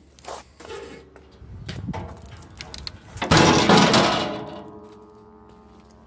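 The sheet-metal engine cover of a Rammax trench roller being lowered and shut: a few clicks and a scraping swell, then a loud bang about three seconds in, and the panel rings briefly as it fades.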